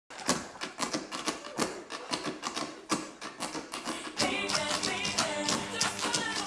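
Tap shoes striking a stage in quick, uneven clicks, joined about four seconds in by louder backing music with a melody.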